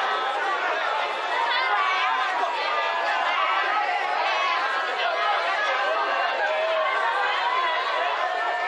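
Many voices talking and calling out at once, overlapping without a break: rugby players and sideline spectators chattering around a ruck, at a steady level.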